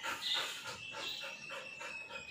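Black Labrador puppy panting with its tongue out, quick even breaths in a steady rhythm.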